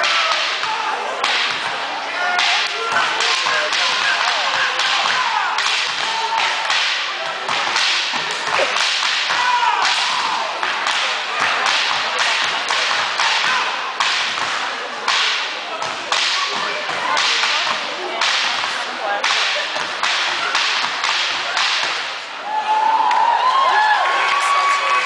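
Step routine with canes: a quick, uneven rhythm of sharp stomps and cane strikes on a gymnasium floor, about two a second, echoing in the hall.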